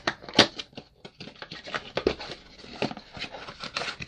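Handling noise from a cardboard trading-card box: a run of irregular taps, clicks and scrapes as it is turned in the hands.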